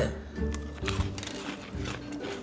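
Quiet background music with faint, scattered crunching as small crackers are chewed.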